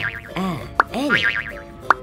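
Children's phonics song: the short-a sound "ah" sung several times on bouncy notes that rise and fall, over music. Two sharp clicks land within these two seconds.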